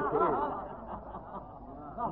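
Audience of many voices briefly murmuring and chuckling in reaction to the speaker, dying away within about a second over the hum and hiss of an old tape recording.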